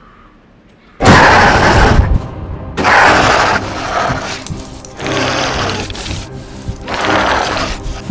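Faint hiss, then about a second in a sudden loud horror-film music sting with crashing hits, which swells up again in waves several times.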